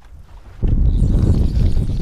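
Wind buffeting the microphone: a loud, low rumble that starts suddenly under a second in and holds steady.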